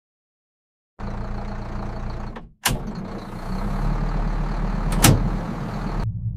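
A large engine running with a low, steady hum, starting about a second in. It drops out for a moment just before a sharp knock, and a second sharp knock comes near the end.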